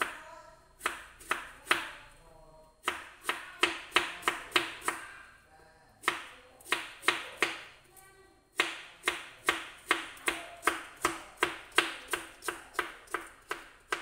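A kitchen knife chopping fresh bamboo shoots into thin strips on a plastic cutting board. The sharp cuts come in quick runs of about three a second, broken by short pauses, with a long steady run in the second half.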